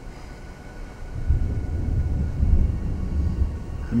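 A deep, uneven low rumble that swells up about a second in and stays loud.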